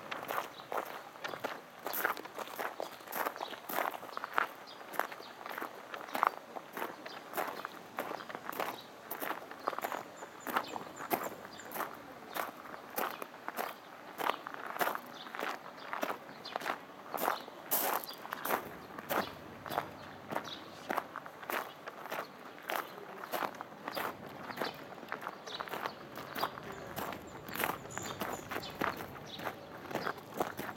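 Footsteps on a loose gravel path, a steady walking pace of about two steps a second, each step a short crunch of stones.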